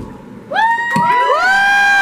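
Small audience whooping and cheering: several overlapping long rising "woo" calls that start about half a second in and are held.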